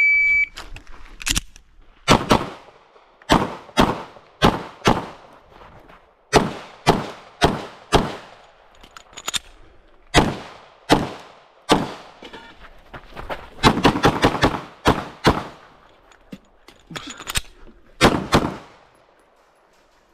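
A shot timer's start beep, then a pistol fired in quick pairs and short strings, about two dozen shots, with pauses between strings. The last pair comes near the end.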